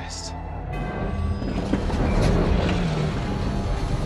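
Film sound design of a giant alien Leviathan: a deep, rumbling roar that builds about a second in and swells to its loudest midway. It plays over the orchestral score, with a brief rushing hiss at the very start.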